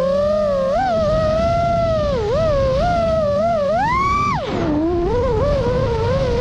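Five-inch FPV freestyle quadcopter's motors and propellers whining, the pitch swooping up and down as the throttle changes. About four seconds in there is a sharp climb in pitch, then a sudden drop as the throttle is chopped.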